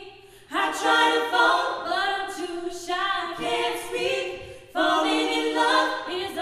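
An a cappella vocal ensemble singing in close harmony, with no instruments. The voices drop briefly at the start, come back in together about half a second in, dip again and re-enter strongly near the end.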